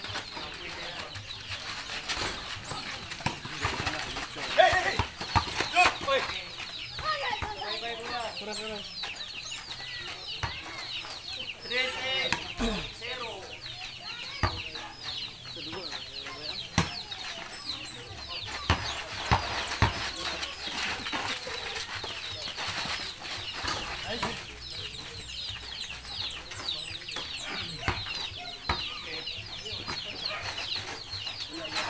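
A basketball being played on a dirt court: the ball thuds now and then as it is dribbled and shot, with a few shouts from the players. Under it runs a constant high chirping of birds.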